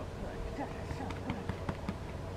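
Faint, distant voice with short murmured sounds, over a steady low hum. A quick run of about five sharp clicks comes in the second half.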